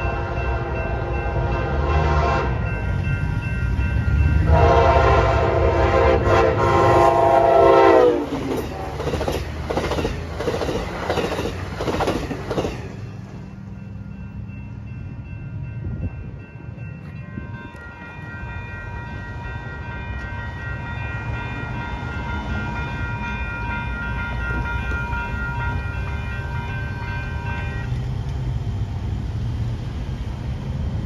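Amtrak passenger train sounding its horn as it passes at speed, the chord dropping in pitch as it goes by about eight seconds in. Several seconds of wheels clattering over the rails follow.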